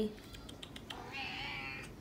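Domestic cat meowing once, a drawn-out meow about a second long starting about a second in, after a few faint clicks.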